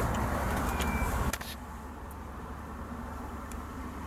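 Steady low hum and hiss inside a car cabin that cuts off sharply just over a second in, leaving a quieter steady hum.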